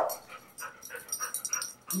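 A dog making a few short sounds, restless after being told not to bark.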